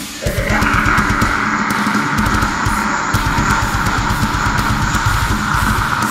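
Heavy metal instrumental passage: a held, distorted electric guitar line over fast, steady bass drum strokes.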